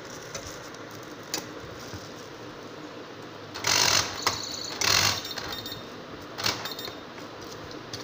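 Motorised RFID door lock's mechanism making two short mechanical bursts about a second apart, with a brief high beep between them, amid a few light clicks from the lock being handled.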